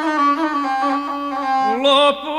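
A gusle, the single-stringed bowed Balkan fiddle, plays a short instrumental passage between sung verses of an epic song. It moves in stepped, held notes, with a rising slide near the end.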